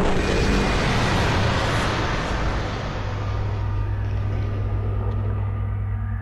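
Sound effect of a helicopter-style rotor and engine flying away: a loud rushing noise that slowly fades over a steady low hum.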